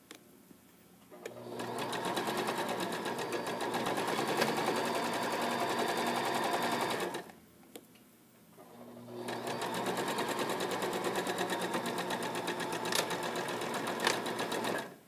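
Electric sewing machine stitching a seam through cotton fabric, the needle running fast and even in two long runs of about six seconds each with a short stop between them.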